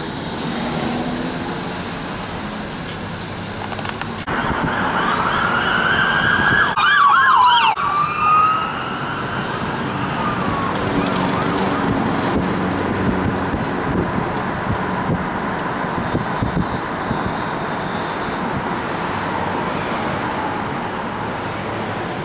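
An emergency-vehicle siren sounds for a few seconds about a quarter of the way in: rising and falling wails, then a fast up-and-down yelp, which is the loudest moment. Under it is the steady road noise of the moving car, heard from inside the cabin.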